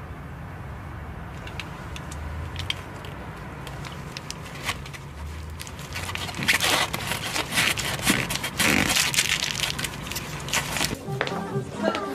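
A low steady vehicle-interior hum, then from about halfway a run of quick scratching and rustling on a glossy magazine page.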